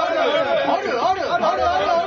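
Many voices chanting 'aru aru' over one another.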